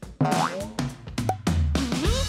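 Cartoon boing sound effects with gliding pitch over background music, and a low bass note entering about three quarters of the way in.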